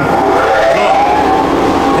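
Supercharged BMW M54 straight-six running hard under load on a chassis dyno during a fifth-gear power run, with a steady tone that rises slowly in pitch and then holds.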